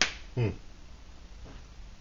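A single sharp click, then a man's short murmured "hmm" about half a second later.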